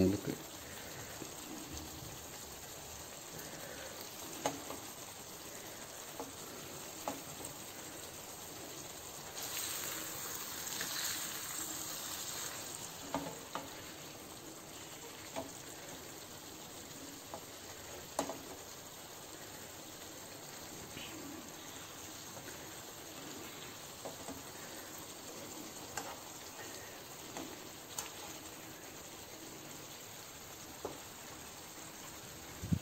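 Fish curry in coconut-milk gravy sizzling faintly in a pan, with a metal spoon scraping and tapping against the pan now and then as the gravy is spooned over the fish. The sizzle swells briefly about ten seconds in.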